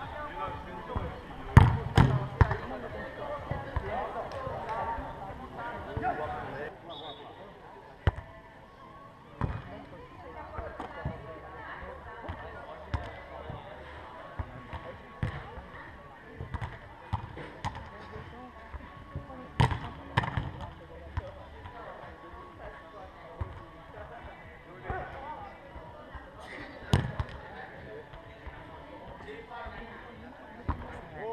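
A footvolley ball being struck by players on a sand court: sharp thumps scattered through, the loudest pair close together near the start, over a background of voices.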